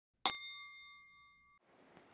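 A single bell-like ding of a message-notification chime, struck once about a quarter of a second in and ringing out for about a second.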